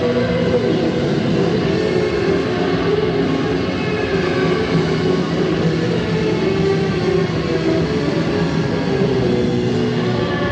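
A live rock band playing a dense, steady passage of held, overlapping tones, with electric guitar in the mix.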